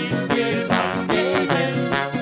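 A live Austrian folk band playing with a steady beat of about four strokes a second, led by a diatonic button accordion (Steirische Harmonika), with a man singing into a microphone.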